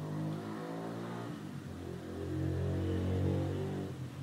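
A low engine hum running steadily, its pitch wavering slowly and growing a little louder in the second half.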